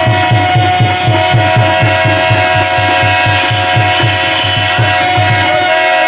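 Live drama-troupe music: a hand drum keeps a steady beat under long, sustained held notes.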